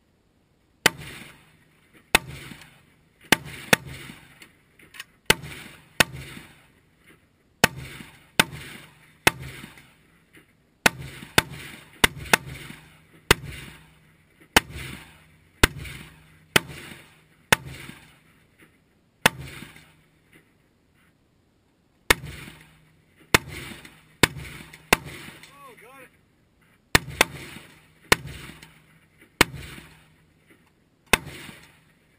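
Semi-automatic rifle fire from several AR-15-style carbines shooting at once. It is an irregular string of sharp cracks, about one to two a second, each with a short fading tail, and it pauses for about two seconds about two-thirds of the way through.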